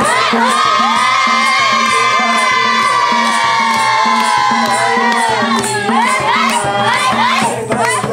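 Several voices raise one long, high group cheer together, slowly falling in pitch and dropping away about six seconds in. Underneath runs a steady madal drum beat with hand clapping.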